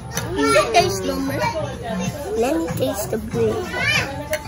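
Children's voices talking, the words not clear.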